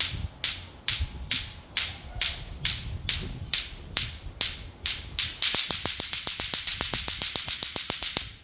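Lato-lato clacker balls, two plastic balls on strings, knocking together in a steady clack about two times a second. About five seconds in the rhythm speeds up to rapid clacking about six times a second.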